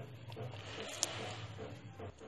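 Faint wet squelching and scraping as a spatula stirs thick tomato gravy in a non-stick pot, with one small click about a second in and a low steady hum underneath.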